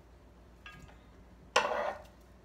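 Near silence with one faint, brief sound a little under a second in; near the end a woman starts to say "all right".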